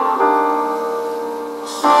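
Soft piano music: a chord is struck just after the start and dies away slowly, and the next chord comes in near the end.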